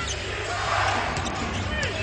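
Live basketball on a hardwood court: several short sneaker squeaks and sharp ball bounces over steady arena crowd noise.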